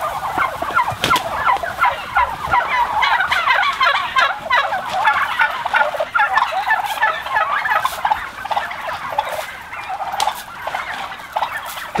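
A large flock of domestic white turkeys calling together: many short, overlapping calls from all sides without a break, with a few sharp clicks among them.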